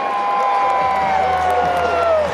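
Ballpark crowd noise with a single high tone held for about two seconds, sagging slightly in pitch near the end.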